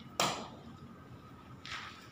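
A bo staff swishing through the air as it is swung: a loud whoosh about a quarter second in and a softer one near the end.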